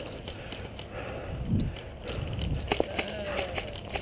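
Faint distant voices over a low outdoor rumble, with a few short sharp clicks about two-thirds of the way through.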